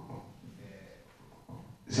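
Faint breathing and handling noise on a handheld microphone in a quiet pause, then a man starts speaking at the very end.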